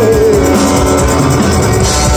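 Live rock band playing loudly: electric guitars and drum kit, with a male lead vocal whose held note ends about half a second in.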